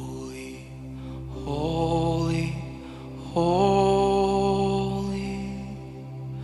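Slow live worship music: a sustained keyboard pad with a steady low bass underneath, and a singer holding two long notes, each sliding up into its pitch, the first about a second and a half in and the second, louder one just past three seconds.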